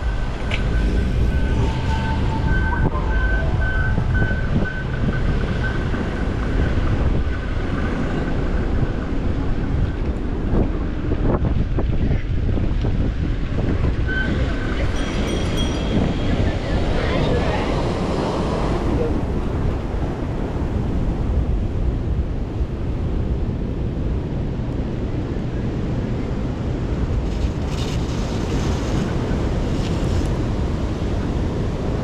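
Wind rushing over the microphone of a moving bicycle's camera, with ocean surf breaking on the rocks beside the path.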